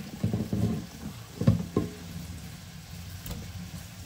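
Hot water poured from a pot through its strainer lid into a stainless steel sink, splashing over a colander as cooked broccoli is drained. Two sharp knocks come about a second and a half in.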